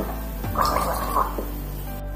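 A man gargling liquid with his head tipped back: one rough, bubbling gargle lasting about two-thirds of a second, starting about half a second in, over steady background music.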